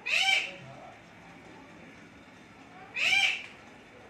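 A bird calling twice, about three seconds apart, each call a short loud note that rises and falls in pitch.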